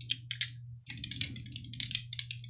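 Astrology dice clicking against each other as they are shaken in a hand: a quick, irregular run of small clicks, over a faint steady low hum.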